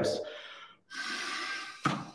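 A man's short breathy blow of air, as if blowing into a bagpipe's blowpipe, lasting about a second after a brief dropout.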